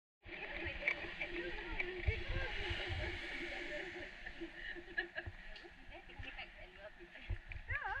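Indistinct voices of several people talking, over a steady outdoor hiss.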